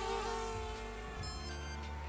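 Connex Falcore HD FPV quadcopter's motors buzzing in flight, the pitch dipping a little in the first half-second, over background music.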